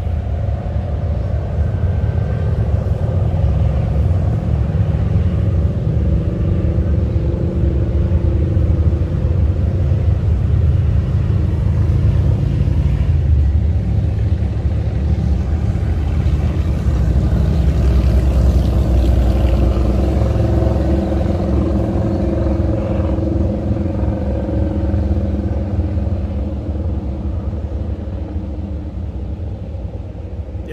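Motorcycles passing on the canyon road, their engines rumbling steadily, loudest a little past the middle and easing off near the end.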